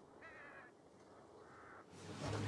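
Two faint bird calls: a short wavering one about a quarter of a second in, and a flatter one near the end.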